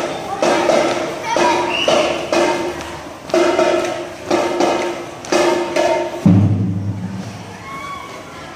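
School drum band playing a slow, even beat: a sharp drum strike about once a second over a held note. About six seconds in comes a louder hit with a low sustained note, and the music fades near the end.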